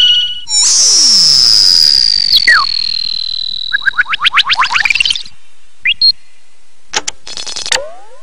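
Synthesized cartoon sound effects: a short steady tone, then a long high whistle-like tone gliding slowly down over about three seconds, with a lower sweep falling beneath it. A run of quick, high-pitched chirps follows about four seconds in.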